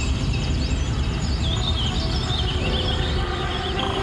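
Birds chirping in quick, sweeping calls over a steady low rumble, a field recording mixed into a song. Pitched musical tones come back in near the end.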